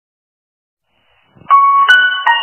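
Silence, then about one and a half seconds in a musical intro jingle begins with a bright, chime-like sustained note, followed just before the end by a second, higher note.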